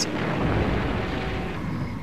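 A steady, deep rumble of noise from the combat footage's soundtrack, heaviest at the bottom, swelling about half a second in and easing slightly near the end, with no separate bangs.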